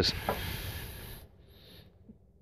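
Soft hissing, rubbing noise of a hand picking up a Morakniv Garberg knife off a wooden table. It fades out over about a second.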